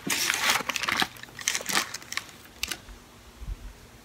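Paper sandwich wrapper crinkling as it is unwrapped and handled, loudest in the first second and again briefly past the middle, then only a few small ticks of handling.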